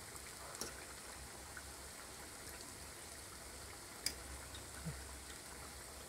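Unniyappam batter frying in coconut oil in a cast unniyappam pan: a faint, steady sizzle of bubbling oil, with a couple of light clicks of a fork against the pan.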